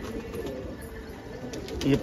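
Domestic pigeons cooing in the background, a faint, repeated low coo.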